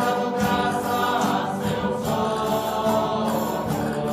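A group of voices singing a slow Neocatechumenal hymn in long, held, chant-like phrases over a steady accompaniment.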